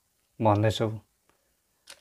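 A man's voice: one short spoken utterance of about half a second, between silences, with a brief click near the end.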